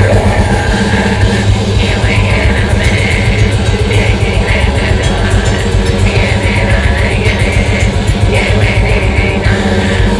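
Grindcore band playing live at full volume: heavily distorted guitar and bass over dense, fast drumming, with harsh screamed vocals on top.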